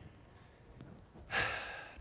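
A man's audible breath, about half a second long near the end, between stretches of quiet room tone.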